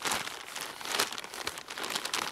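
Polyethylene tubing bag crinkling and straw rustling as gloved hands press the straw down hard into it, an uneven run of crackles with a few louder ones near the start and about a second in.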